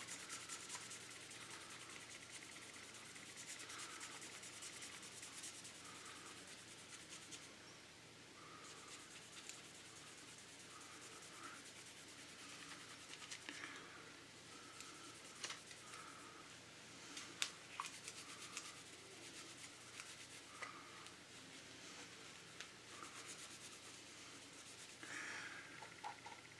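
Faint, uneven rubbing of a microfiber cloth buffing polishing compound over the painted plastic body of a scale model car, working out colour-sanding scratches. A few faint clicks come in the second half.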